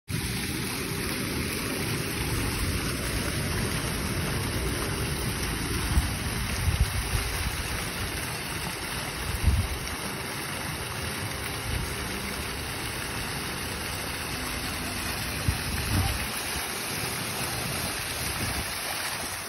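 Water from a rock fountain splashing steadily into its pool, a continuous rushing noise, with a few short low thumps on the microphone.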